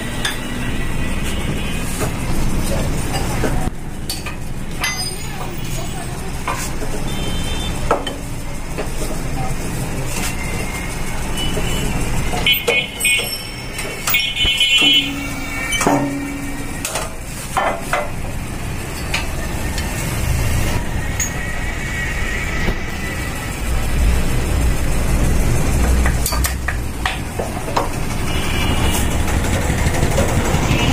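Metal clinks and knocks as a motorcycle crankshaft assembly is handled and seated on a workshop press, over steady workshop background noise. A cluster of sharp, briefly ringing clinks falls around the middle.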